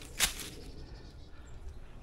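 A short, sharp crackle of dry fallen leaves being disturbed, about a quarter second in, followed by faint rustling in the leaf litter.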